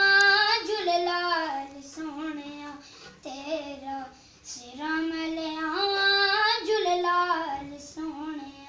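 A boy singing alone in a high voice, holding long notes with small bends and wavers: one long phrase at the start, shorter phrases in the middle, and another long phrase from about four and a half seconds in.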